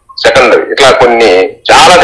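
Speech: a person talking in Telugu, close to the microphone, with a short pause just before the end.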